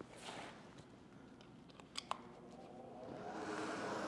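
Sharp plastic clicks as the power plug is handled and pushed into an extension cord, the clearest about two seconds in. A small squirrel-cage centrifugal blower then starts and spins up, its hum growing louder over the last second.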